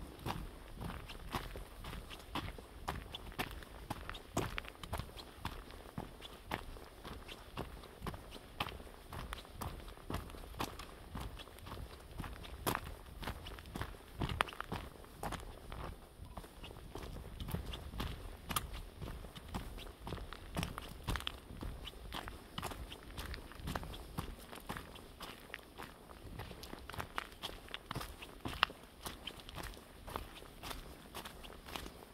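A hiker's footsteps on a dirt and gravel trail scattered with dry leaves, at a steady walking pace of about two steps a second.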